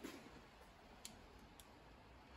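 Near silence with a few faint metallic clicks as a snap gauge is fitted between the jaws of digital calipers, the sharpest about a second in.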